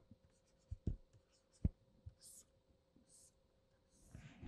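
Stylus writing on a tablet screen, heard faintly: a few soft taps and light scratchy strokes as the pen touches down and draws.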